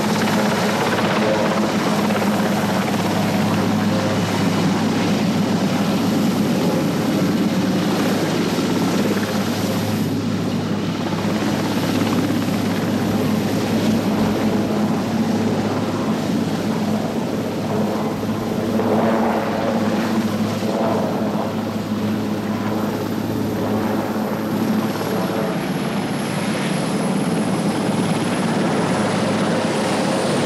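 Marine One, a Sikorsky VH-3 Sea King helicopter, running loud and steady as it hovers and sets down on the landing pad, then sits with its main and tail rotors still turning.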